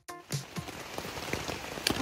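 Steady rain falling on a tent's fabric fly, an even hiss with scattered single drops ticking, one sharp tick near the end.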